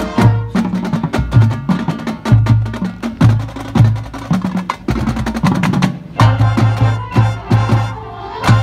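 High school marching band playing a percussion-heavy passage, full of sharp drum and mallet strikes over low pitched hits, with held band notes coming back in about six seconds in.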